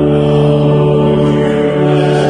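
Church organ holding a loud, steady sustained chord in hymn accompaniment.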